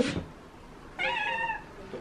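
Tabby domestic cat meowing once, about a second in, a single call of under a second.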